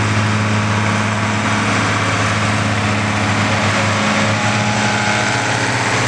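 Farm tractor diesel engine running steadily nearby, a continuous low drone without pauses.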